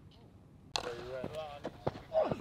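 Sharp knocks of cricket bats striking balls in practice nets, three or four in the second second, over people talking in the background.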